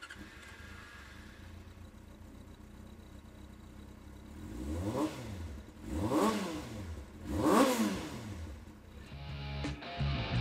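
2008 Yamaha YZF-R6S's 599 cc inline-four engine, fitted with a Yoshimura slip-on muffler, idling quietly, then revved in three quick throttle blips, each rising and falling in pitch, before dropping back to idle.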